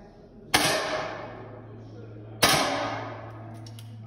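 Two air rifle shots on the indoor range, about two seconds apart, each a sharp crack followed by a ringing echo that fades over about a second.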